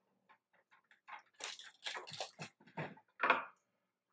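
Small irregular clicks and crackles of Nerds candy being handled and pressed onto an iced gingerbread cookie, with a louder crackle near the end.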